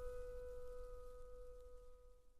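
The last piano chord of a slow pop ballad ringing on faintly and fading away.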